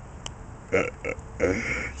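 A man's short laughs: a few brief chuckling bursts in the second half, after a quiet start.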